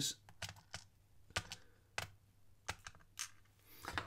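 Sparse, faint clicks and ticks of tweezers picking a small brass serrated security pin out of a plastic pinning tray, about ten light taps spread over a few seconds.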